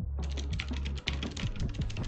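Fast typing on a computer keyboard: a dense run of key clicks starting just after the beginning, over a steady low hum.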